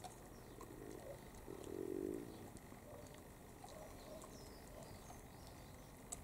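Faint crunching clicks of a dog gnawing a lamb bone. A bird coos once, low and short, about two seconds in, with faint bird chirps later.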